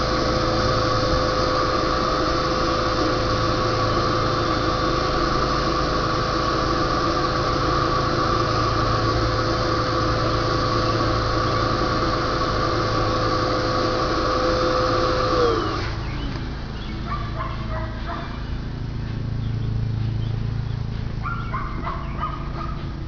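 Electric air pump inflating a vinyl inflatable orca float, running with a steady whine and rushing air. About 15 s in it is switched off and its pitch falls as it spins down. A few faint short calls follow in the background.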